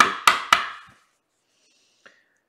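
A quick run of sharp knocks, about four a second, fading out within the first second.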